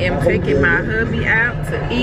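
Car cabin road and engine noise, a steady low rumble, with a high voice sounding over it in the first second and a half without clear words.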